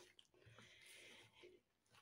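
Near silence, with faint soft scraping of a wooden spatula stirring flour in a glass mixing bowl.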